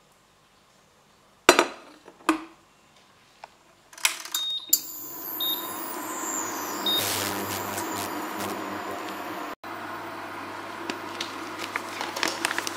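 Two knocks, then clicks and short high beeps from an induction hob's touch controls as the power is set. After that the hob runs with a steady hum, fan noise and a high whine that falls in pitch.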